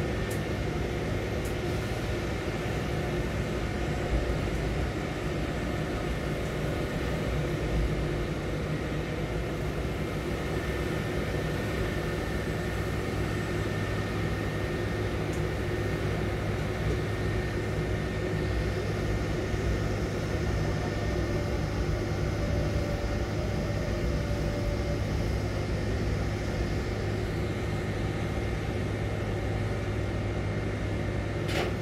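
Steady mechanical hum of a quay crane's hoist and trolley machinery, with a band of hiss that comes in past the middle and fades near the end as the spreader works in the grain hold.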